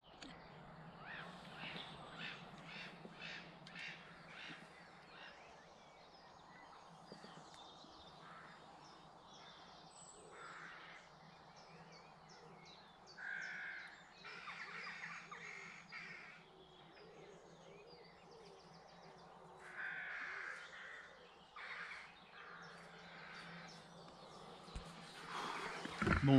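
Faint wild birds calling: a quick run of short repeated calls in the first few seconds, then several louder, harsh calls spaced out through the rest, over a steady low hum.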